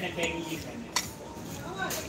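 Metal fork clinking against a dinner plate, with one sharp clink about a second in.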